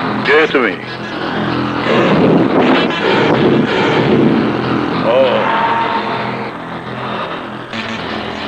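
Dramatic film background score: a dense, sustained drone of held tones, with a wavering voice-like glide about half a second in and again about five seconds in.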